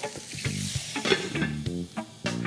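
Burger patties sizzling in a hot cast iron pan as a little water goes in and hisses into steam to melt the cheese; the hiss fades about a second in. A few sharp clinks sound over it.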